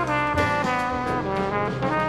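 1970s jazz recording: brass horns, with trumpet, play a held, moving melody in harmony over a walking bass line and light cymbal strokes.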